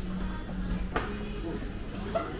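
Background music playing steadily, with one sharp smack about a second in, likely a kick in Muay Thai sparring landing on the opponent's guard.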